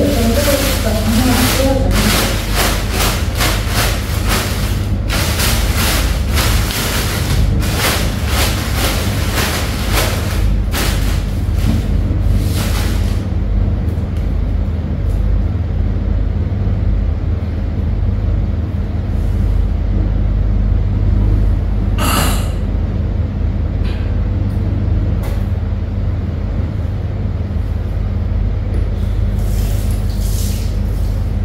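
Rustling and clattering of a plastic bag and household items being handled through the first dozen seconds, over a steady low hum. One sharp clink comes about 22 seconds in.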